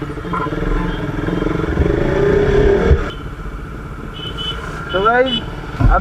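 Motorcycle engine accelerating, rising in pitch and getting louder over about three seconds, then cutting off abruptly into a quieter stretch of road noise. A man's voice starts near the end.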